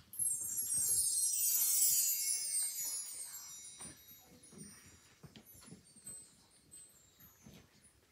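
A bright, shimmering chime sweep that starts suddenly, slides down in pitch and fades away over about three seconds, followed by faint hall noise with small shuffles and clicks.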